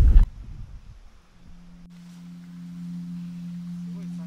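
Background music fading in: one steady low drone tone that swells gently and holds, with a faint click shortly before the middle.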